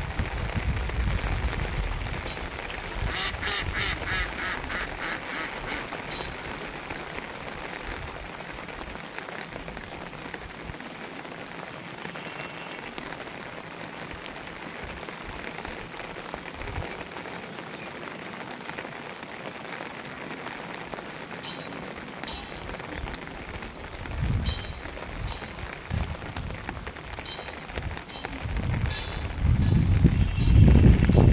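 Steady rain falling on open floodwater. A few seconds in comes a quick run of about eight short calls, about three a second, and low thumps near the end.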